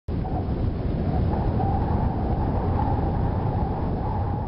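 Wind blowing steadily, deep and rumbling, with a faint wavering whistle running through it.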